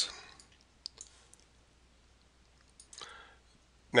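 Computer mouse clicking during a pause in speech: one sharp click about a second in and a few fainter ticks after it, over quiet room tone, with a short soft noise near the end.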